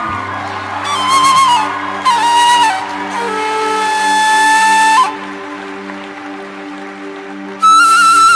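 Music: a flute melody in short phrases, including one long held note, over a steady low sustained accompaniment. The flute drops out for a few seconds and comes back loud near the end.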